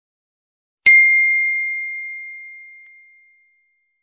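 A notification-bell 'ding' sound effect from a subscribe-button animation: one bright chime strikes about a second in and rings out, fading away over about two and a half seconds.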